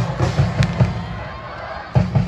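A stadium cheering section's drums beating in a rhythm with band music, then easing off about halfway through before one strong drum hit at the end.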